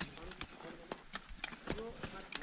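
Sharp, irregular knocks, about two a second, of ice axes and crampons striking into a glacier ice wall, with voices talking in the background.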